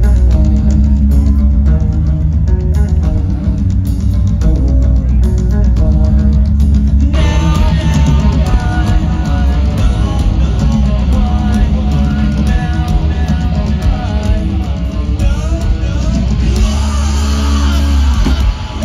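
Live nu-metal band playing a heavy, distorted guitar-and-bass riff, loud and boomy as recorded from within the crowd. About seven seconds in, the sound fills out sharply with the full band's drums and cymbals.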